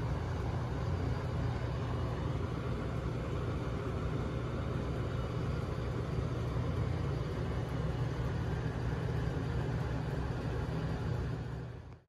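Steady bakery-kitchen machine noise: a low rumble with a hiss above it that fades out at the end.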